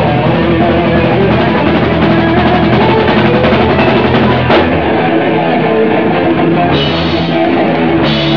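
Hardcore punk band playing live and loud: distorted electric guitar over a pounding drum kit, with a sharp crash about four and a half seconds in.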